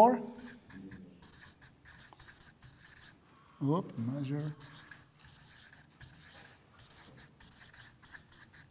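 Marker pen writing on a paper sheet on a whiteboard: a quick run of short strokes as a word is written out. A man's voice sounds briefly about four seconds in.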